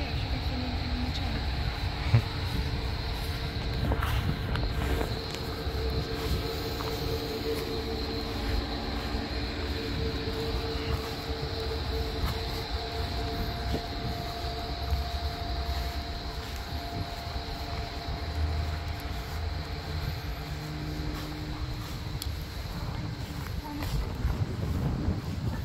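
Wind rumbling on the microphone over a steady mechanical drone made of several held tones.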